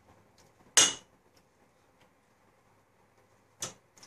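A large metal spoon clinks sharply once against a stainless steel pot, with a brief ring, about a second in, and knocks again more softly near the end, while noodles are scooped out of the pot.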